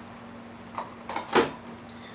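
Plastic canopy of an RC helicopter being pulled off its mounts: a few short clicks and handling sounds, with one sharp snap a little past halfway through.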